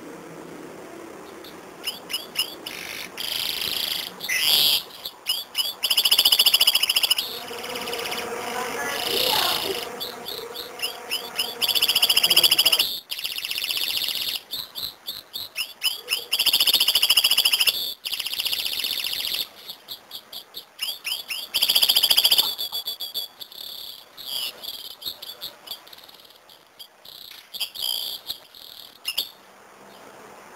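A caged serin canary singing: long, high-pitched phrases of rapid trills and repeated notes, broken by short pauses.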